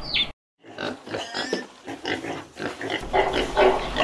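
Chicks peeping briefly at the very start, then after a short break a piglet grunting in a run of short, irregular sounds that grow louder toward the end.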